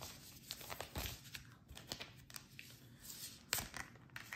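Tarot cards handled close to the microphone: a run of soft papery swishes and light clicks as the cards are shuffled and slid in the hand, with a sharper snap near the end as a card is pulled out.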